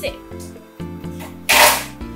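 Background music with a steady beat, and near the end a short, loud rasp of sticky tape being pulled off the roll.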